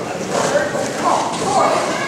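Voices echoing in a large hall over the scuffing and thudding of several pairs of wrestlers and their shoes on foam wrestling mats.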